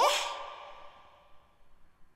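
A "What" vocal sample from a hip-hop beat played back once, dry with no delay yet: a breathy voice that slides sharply up in pitch into a held note and fades out over about a second and a half.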